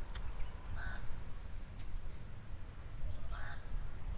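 A bird calling outdoors: short calls about a second in and again near the end, over a steady low rumble, with a couple of brief sharp clicks.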